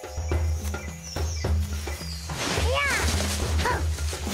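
Suspenseful cartoon background music with a pulsing bass line. Over it, about two and a half seconds in, come two or three short animal calls, each rising and then falling in pitch, from the hidden animal in the leaves.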